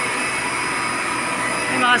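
Steady drone of a running reverse osmosis water plant, its pumps and pressurised flow making an even hum with several constant high whining tones over it.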